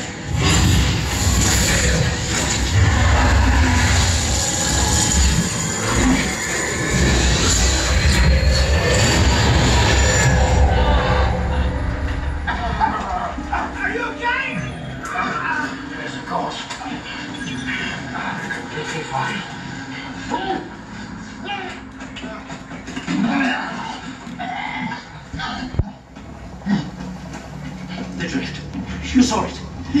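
Film soundtrack played through a home-theater sound system and heard in the room: a dense, loud mass of sound effects and score with heavy deep bass rumble for about the first ten seconds, then quieter scattered effects and brief voices.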